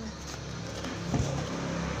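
Low steady hum of a motor vehicle engine, with a faint knock just after a second in.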